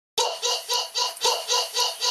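Laughter: an even run of short 'ha' syllables, about four a second, starting just after the beginning.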